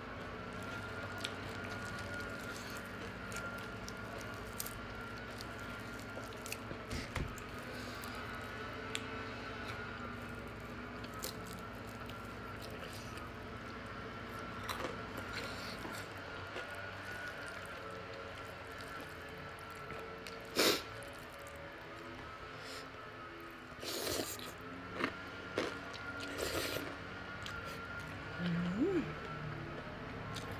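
Close-up eating sounds: chewing and wet, squishy mouth sounds from rice noodles and fried chicken eaten by hand, with a few sharp crunches in the second half, over faint steady background music.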